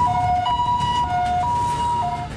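Two-tone ambulance siren, sounding a high note and a lower note in turn.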